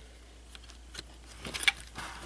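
Plastic LEGO pieces of a built speeder model being handled: a few light clicks and taps, mostly in the second half.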